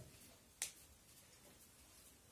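Near silence in a small room, broken by one short, sharp click about half a second in.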